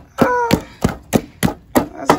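A utensil knocking and pounding in a large aluminium cooking pot of greens: short sharp knocks repeating about three times a second.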